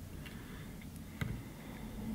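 Faint ticks from tying thread being worked by hand through a whip finish at the head of a streamer fly, with one sharper click a little past a second in, over a low room hum.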